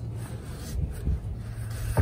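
Faint handling and rubbing as a rubber SumoSprings spacer is worked into a van's front coil spring by hand, over a low wind rumble on the microphone.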